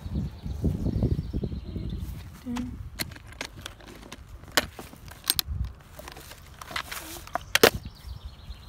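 Handling noise from rummaging through a pile of discarded items: a low rumble at first, then a run of sharp clicks and knocks, the loudest near the end, as a small wooden box with a metal handle is lifted and set back down among the things.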